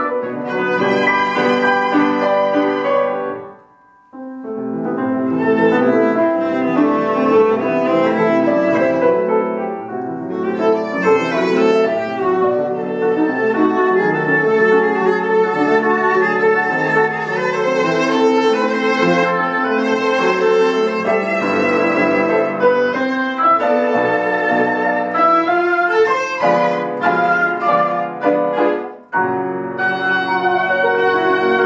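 Chamber trio of oboe, viola and piano playing a classical piece, with bowed viola lines over piano accompaniment. The music breaks off briefly about four seconds in, then resumes.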